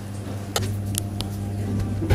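A steady low hum, with a few light clicks of a metal spoon against the pan about half a second and a second in.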